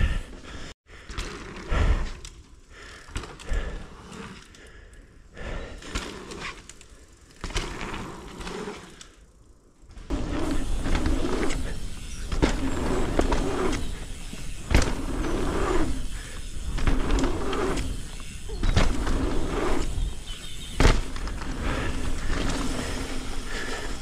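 Mountain bike ridden fast over dirt jumps: knobby tyres rolling on packed dirt with wind rushing over the camera microphone, growing louder about ten seconds in, with a few sharp knocks and rattles as the bike lands.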